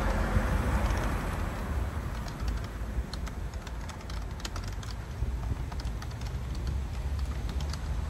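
Keys clacking on a compact keyboard, typed in quick irregular runs that grow busier after the first couple of seconds. Underneath is a steady low rumble, and the noise of a passing vehicle fades away over the first two seconds.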